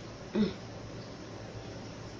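A woman's short closed-mouth "mmm" of enjoyment as she tastes food, once, about half a second in.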